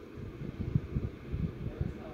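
Low, uneven rumble and soft thumps of a handheld phone's microphone being handled as it pans across a paper menu.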